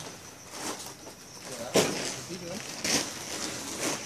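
Heavy sacks thudding as they are loaded onto a semi-trailer's flatbed: two thumps about a second apart, the first the louder, with faint voices behind.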